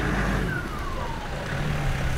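A car driving past on the street: a steady low engine hum and road noise, with a thin whine that falls in pitch through the middle as it goes by.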